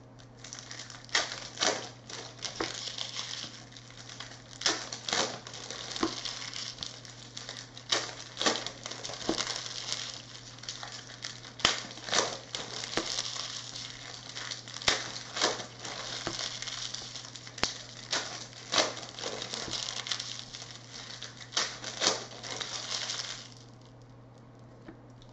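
Topps Chrome trading cards and packs being handled: steady rustling and crinkling with frequent sharp clicks as cards are flipped and snapped against each other. The handling stops just before the end.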